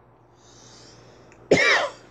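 A man coughs once, short and sharp, about one and a half seconds in, after a quiet pause.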